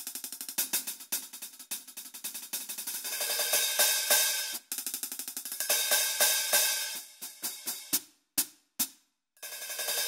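Hi-hat sounds played on a Roland VH-14D digital hi-hat through an electronic drum module. Quick stick strokes run with stretches of longer ringing wash. Near the end come a few lone hits with sudden cut-offs between them.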